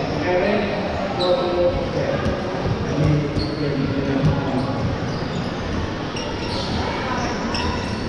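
Dodgeball game in a large echoing sports hall: players and spectators shouting and calling over each other, with the thuds of balls bouncing and hitting several times.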